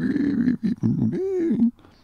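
A man's voice making drawn-out, wordless vocal sounds, one of them rising and falling in pitch. It stops about a second and a half in.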